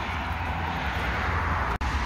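Steady hiss and rumble of road traffic. It cuts out for an instant near the end.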